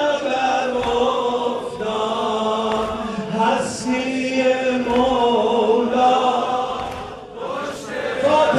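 A man's voice chanting a religious lament into a handheld microphone, in long held notes that slide from one pitch to the next, with a short break near the end.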